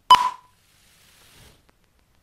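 Film countdown leader's sync beep (the '2-pop'): a single short, high beep with a sharp click at its start, just after the beginning.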